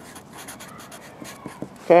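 Felt-tip marker writing a word on lined notebook paper: a run of short, scratchy pen strokes.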